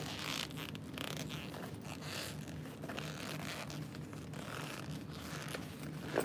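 Fabric of a sewn zipper pouch rustling and scraping in a series of short swishes as it is pulled right side out by hand through a too-small turn hole, over a steady low hum.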